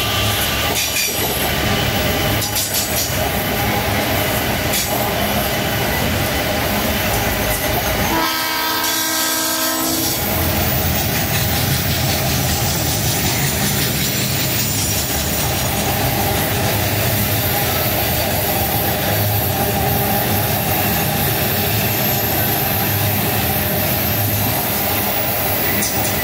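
A loaded eucalyptus-log freight train's wagons rolling past, with the steady noise of steel wheels on the rails throughout. About eight seconds in a train horn sounds for about two seconds.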